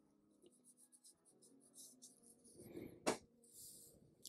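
Faint, short scratching strokes of a felt-tip marker drawing on paper, with a single sharp click about three seconds in.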